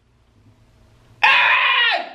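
A man's loud wail of dismay starting about a second in, dropping in pitch as it breaks off near the end.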